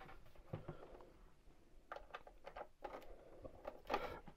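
Faint scattered clicks and knocks of a power cable and plug being handled and pushed into an MPC sampler, the clearest knock near the end.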